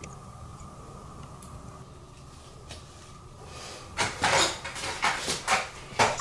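A faint steady hum. About four seconds in comes a run of loud, sharp scrapes and knocks: handling noise at a tarantula enclosure, of the kind made by opening its door.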